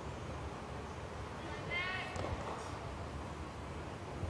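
Open-air stadium ambience: a steady low rumble of wind on the microphone, with one short, distant voice call about two seconds in.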